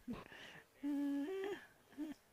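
A man's voice humming briefly over a microphone: a short held note about a second in, then a step up to a slightly higher note, lasting under a second in all.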